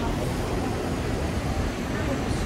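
Steady low rumble and hiss of open-air background noise, with no distinct events.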